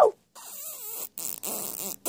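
A child's quiet, wordless vocalizing in several short stretches, like whimpering or whining in a character voice.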